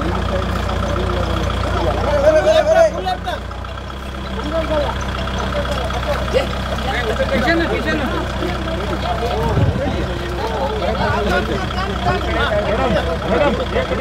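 Tractor's diesel engine running steadily at low revs, a constant low hum, with a crowd of people talking over it and a louder shout of voices about two seconds in.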